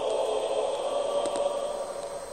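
Choral singing with long held notes, several voices sustaining a chord.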